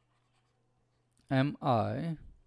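Faint scratching and tapping of a stylus writing on a tablet screen over a low steady hum, followed about a second and a half in by a man's voice speaking briefly.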